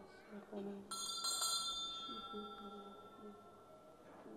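Altar bell rung at the consecration of the Mass, marking the elevation of the host: struck about a second in, with a second strike just after, then a high metallic ringing that slowly fades. Faint voices murmur underneath.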